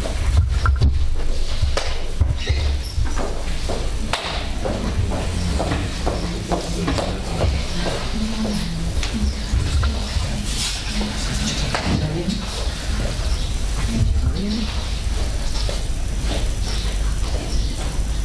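Quiet, indistinct talking among a few people, with scattered clicks and rustles of handling, over a steady low rumble.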